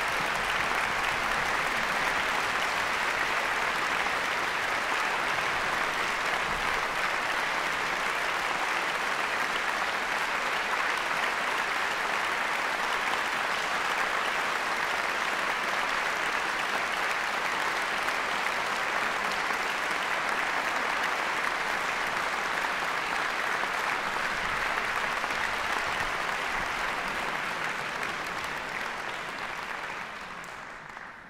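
Audience applause in a concert hall, a steady dense clapping that begins to thin out near the end.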